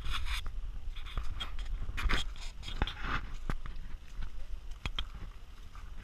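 Footsteps crunching on dry fallen leaves and brushing through dry reeds along a trail: irregular crunches, snaps and rustles, with a steady low rumble underneath.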